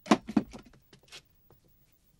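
A front door being pushed shut: two quick knocks right at the start, the loudest sounds here, then a short scuff and light footsteps on a hard floor.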